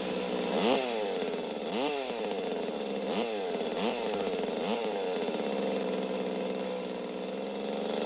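Chainsaw engine running and being revved repeatedly, the pitch rising and falling about once a second, then holding more evenly for the last few seconds.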